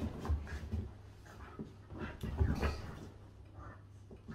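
Two dogs play-fighting on a sofa: irregular soft thumps and scuffling of bodies and paws on the cushions, with a few faint dog sounds.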